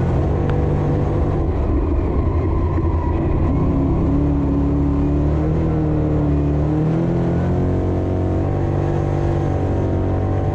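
Dirt modified's V8 engine, heard from inside the cockpit while racing on a dirt oval. The engine note falls and climbs twice as the throttle is eased and reapplied, feathered to find grip on a slick, loose track.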